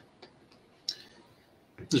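A few faint, sharp clicks in a pause, the loudest about a second in; a man's voice starts near the end.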